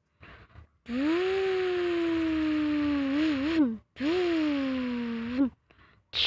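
A person imitating a truck engine with their voice: two long droning hums, the first about two and a half seconds long and slowly falling in pitch, the second shorter, each ending in a quick wobble.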